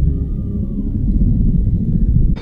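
Deep, steady rumble of a CH-47 Chinook helicopter's twin rotors and engines on a film soundtrack, with only a faint thin tone gliding down higher up.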